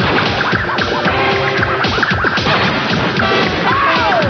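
Busy music soundtrack of an animated TV ident, mixed with crashing, clattering sound effects and many short sliding pitch swoops. One larger swoop rises and then falls near the end.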